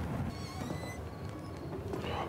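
The show's soundtrack, playing quietly: a low, crackling fire ambience with a few faint high squeaks and soft background music.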